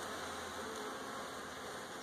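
Steady hum of honeybees buzzing from an opened nucleus hive. The colony is stirred up by the frame inspection, with bees running and flying around the frames.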